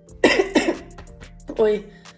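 A woman laughing in two short bursts: a breathy, cough-like laugh, then a shorter one about a second and a half in.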